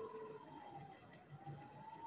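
A faint, steady high whine that sags in pitch a little past a second in and climbs back near the end, with faint overtones above it.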